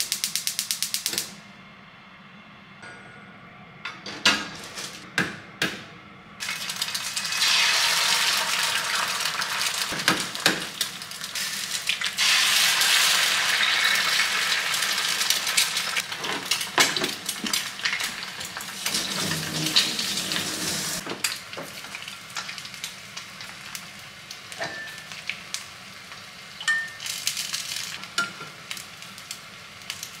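A gas stove burner clicks rapidly for about a second as it lights under a small uncoated square frying pan. About six seconds in, eggs start to sizzle loudly in the hot pan. The sizzle eases to a quieter steady hiss in the last third, with a few light clinks and knocks of the pan.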